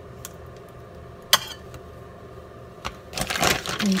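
A spoon scooping crème fraîche from a tub into a bowl: small clicks, one sharp clink about a second in, then a burst of rustling and clattering near the end.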